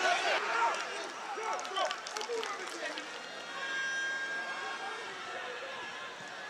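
Football stadium ambience: scattered shouts and voices from players and a sparse crowd. Midway through, a steady high-pitched tone is held for about two seconds.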